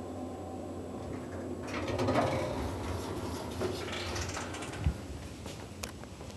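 Schindler elevator doors sliding open about two seconds in, over the steady low hum of the car. A few footsteps and a sharp thump follow as the rider steps out of the car.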